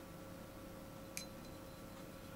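A single light click with a brief, thin, high ring, about a second in, as a paintbrush taps the porcelain mixing palette, over faint room tone with a steady low hum.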